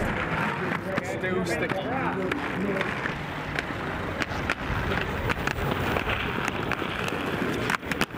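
Inline skate wheels rolling on paving, with short clacks and knocks of the skates on a street ledge, and people's voices nearby.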